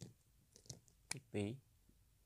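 A few short, sharp clicks spread over two seconds, the loudest just over a second in, with one brief spoken syllable between them.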